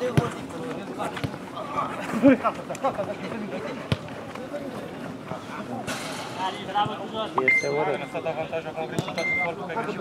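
Players shouting during a five-a-side football game on artificial turf, with a few thuds of the ball being kicked early on. A referee's whistle sounds twice: a steady blast of about a second roughly three quarters of the way in, and a short one near the end.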